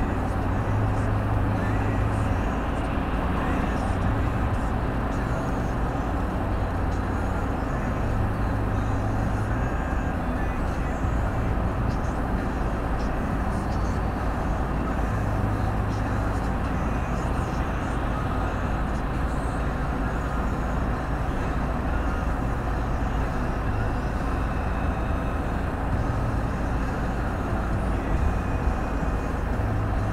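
Steady road and engine noise of a car cruising at motorway speed, heard from inside the cabin: an even rumble from tyres and engine with a low hum that swells and fades.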